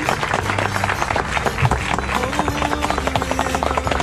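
Guests applauding continuously after the couple is pronounced married, with music playing softly underneath.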